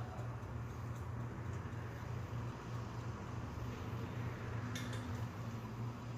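Hair-cutting scissors snipping through a section of wet hair a few times, short sharp clicks over a steady low hum.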